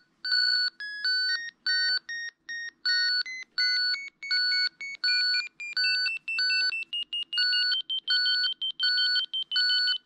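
Avalanche transceivers in search mode beeping as they pick up the signal of a transceiver left in send mode. One beep repeats at a fixed pitch a little under twice a second, and a second run of beeps between them climbs gradually in pitch.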